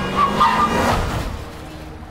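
A car passing close at speed: a rushing whoosh that swells and fades away within about a second and a half.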